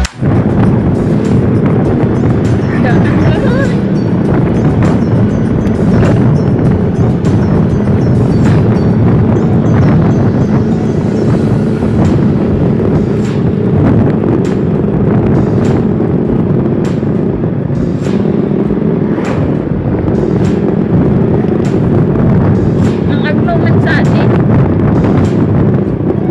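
Riding noise from a moving motorcycle: wind buffeting the microphone over engine and road noise, loud and steady throughout.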